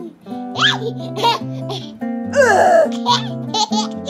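A baby laughing in several short bursts, the loudest about two and a half seconds in, over background music with steady held notes.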